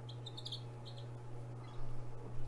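A few-days-old Rhode Island Red/ISA Brown cross chick peeping: several short high peeps within the first second, over a steady low hum.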